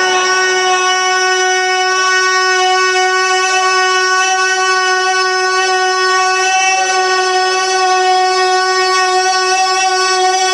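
A man's voice holding one long, steady sung note through a microphone and PA, rich in overtones, reached by an upward slide from the chanting just before and sustained unbroken, with a slight waver about two-thirds of the way through.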